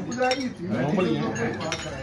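Forks and spoons clinking now and then against ceramic plates and bowls during a meal, over a steady murmur of men's conversation.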